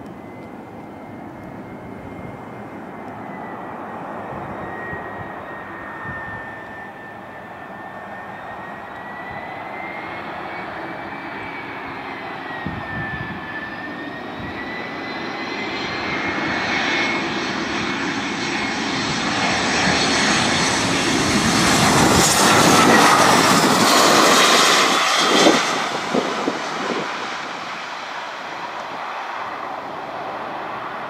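Twin-engine jet airliner on final approach and landing: a steady engine whine that wavers slightly in pitch grows louder as the jet comes in low. It is loudest as the jet passes, about three-quarters of the way through, then eases as the jet rolls down the runway.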